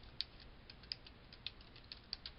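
Faint keystrokes on a computer keyboard: a quick run of about a dozen light clicks as a word is typed.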